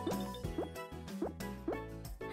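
Soft background music with about four short rising 'bloop' cartoon sound effects, like bouncy hops.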